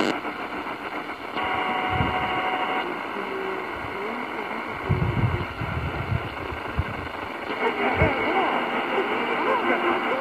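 Tecsun PL-450 portable radio being tuned in steps down the medium-wave band, its speaker giving out static and hiss. A cluster of steady heterodyne whistles sounds for about a second and a half early on. Near the end, a weak distant station's speech comes through the noise.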